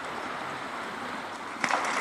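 Steady rush of snowmelt runoff water. Near the end, a few sharp splashes begin as a Newfoundland puppy runs into the shallow water.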